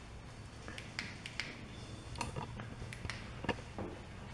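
Handling noise: a few light, irregular clicks and taps while the camera and flashlight are moved, over a faint low room hum.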